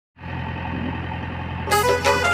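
JCB backhoe loader's diesel engine running with a steady low hum while the machine digs. Music cuts in shortly before the end.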